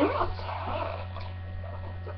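Steady low electrical hum picked up by the webcam microphone, with the tail of a spoken word at the very start.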